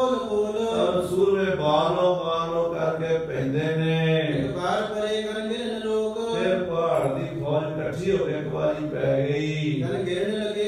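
A man chanting verses in a melodic, sung recitation, with long held notes.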